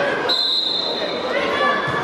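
One long, steady, high whistle blast of about a second, over children's shouts and chatter from the hall, with a thud of the ball near the end.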